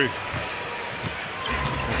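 A basketball being dribbled on a hardwood arena court, a few faint bounces over the steady noise of the arena crowd.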